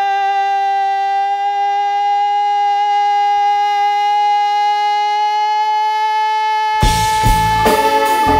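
A woman's belted voice holding one long, steady sung note for about seven seconds, then the pit band comes in loudly under it on a big closing chord near the end.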